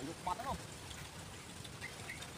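A person's voice: one brief rising-and-falling vocal sound about a third of a second in, over faint steady outdoor hiss.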